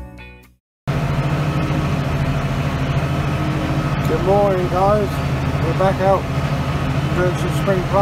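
Intro music cuts off within the first second, then a steady low drone of a tractor running in the field with a seed drill behind it, heard from inside the cab. A man's voice comes in briefly a few times in the second half.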